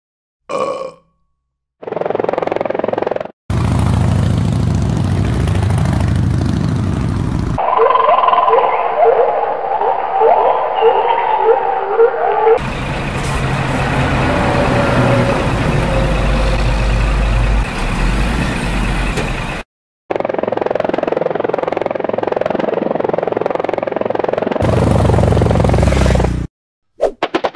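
A string of dubbed sound effects broken by short silent cuts. Midway comes a run of repeated burp-like gurgles, then a vehicle engine runs with a steady low rumble for several seconds.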